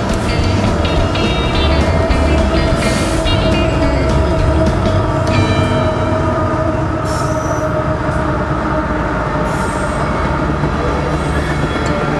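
BNSF freight train passing close by: its diesel locomotive goes by around the middle, then freight cars rolling along the rails, with guitar music mixed over it.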